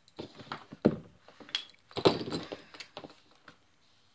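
Hand tools knocking and clattering as they are picked up and put down on a workbench cutting mat: a run of irregular sharp knocks, the loudest about one and two seconds in, dying away near the end.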